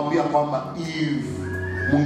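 A man preaching in an animated voice through a handheld microphone, his pitch sliding up and down, over soft sustained background music.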